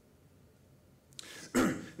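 Quiet room tone, then a man clearing his throat with a short, loud burst in the last half second.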